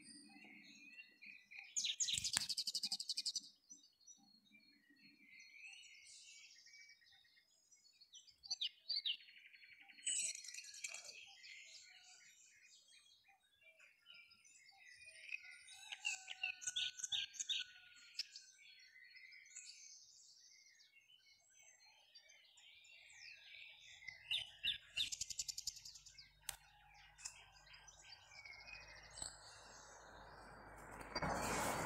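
A small bird chirping and trilling in short, repeated bursts of quick high notes. A faint low hum sets in near the end.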